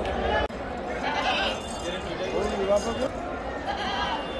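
Goat kids bleating, with people talking in the background.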